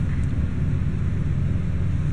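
A steady low rumble with no distinct clicks, chimes or other events.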